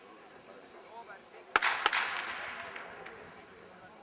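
Starting pistol fired to start a sprint race: a sharp crack about one and a half seconds in, a second crack about a third of a second later, then a fading wash of noise.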